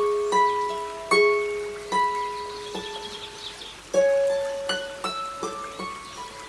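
Harp playing a slow melody: single plucked notes ring on and fade away, about one new note a second.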